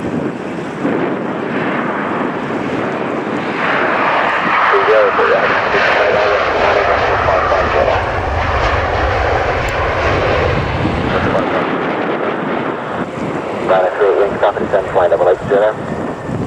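Jet engine roar from a Boeing 737-800 rolling out on the runway just after touchdown. It swells to its loudest around the middle, with a deep rumble, then eases off. Radio voices from air traffic control come and go over it.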